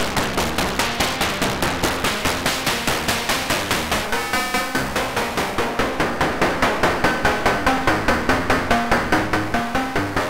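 Eurorack modular synthesizer playing a fast, even run of short pulsed notes, about four or five a second, passed through the SGR1806-20 module's wavefolder as its knobs are turned, so the tone keeps changing. About four seconds in it turns briefly buzzy and ringing, and a thin high tone sits over the notes in the second half.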